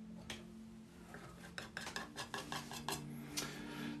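Metal palette knife clicking and scraping against the paint palette while picking up and working oil paint: a run of quick, light taps starting about a second and a half in.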